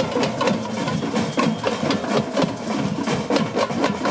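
Parade drum band playing: a dense, irregular run of sharp drum and stick hits.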